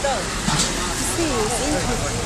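Busy street ambience: untranscribed voices of people talking nearby over a steady bed of street and traffic noise.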